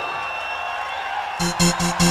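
Early hardcore techno playing in a DJ mix. A hissing wash with a thin high tone holds for about a second and a half, then a fast pounding beat with a buzzing bass note drops in.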